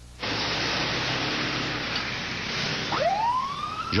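Steady rushing noise of a vehicle on the road. About three seconds in, an ambulance siren starts, its pitch sweeping up into a rising wail.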